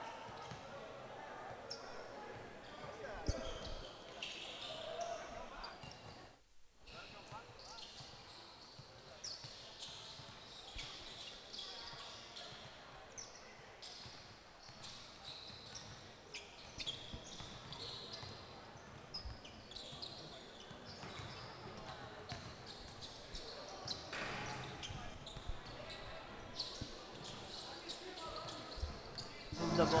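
Faint basketball court ambience: basketballs bouncing on the court floor, heard in a large hall with indistinct voices.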